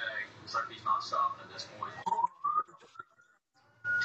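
Faint, broken speech coming through a live-stream connection, with a thin tone rising slowly in pitch through the second half. Near the end the stream's audio cuts out completely for most of a second.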